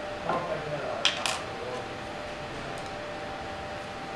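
Hand tools handled on a workbench: a short rustle, then two sharp metallic clicks about a second in, a quarter-second apart, as a screwdriver is picked up from beside a pair of pliers.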